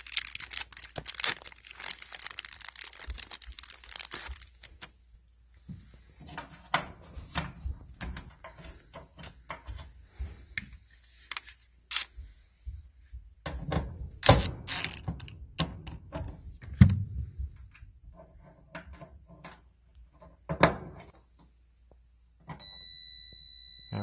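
Hands working on a dryer's thermal fuse mount: a run of irregular clicks, knocks and scrapes of small metal parts and spade-connector wires against the sheet-metal blower housing, with a few louder thunks. Near the end a steady high electronic beep sounds for about two seconds.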